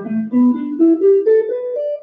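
Electric guitar playing single notes one after another in a steady rising run of about nine notes: the fourth position (box) of the pentatonic scale, played upward.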